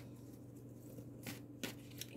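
Oracle cards being handled and drawn from the deck: a few faint rustles and a light tap in the second second, over a low steady hum.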